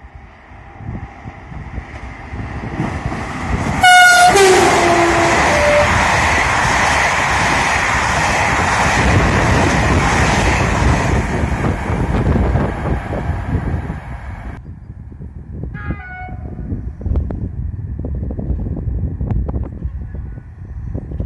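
SNCF BB 22200 electric locomotive sounding a loud horn about four seconds in, its note dropping to a lower pitch within about a second. Its train of Corail coaches then rolls past for about ten seconds, the rolling noise stopping suddenly. A short, fainter horn call follows near the end.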